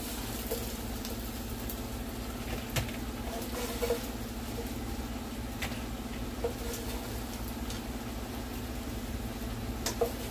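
A steady low hum runs throughout, like a kitchen fan or appliance motor. A few light clicks and taps sound over it as the spatula lifts shrimp from the frying pan onto paper plates.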